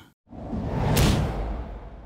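Whoosh transition sound effect: a rush of noise swells in over about half a second, hits a sharp peak about a second in, then fades away with a low rumble.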